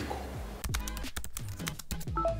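A quick run of computer-keyboard typing clicks, starting about half a second in, over light background music.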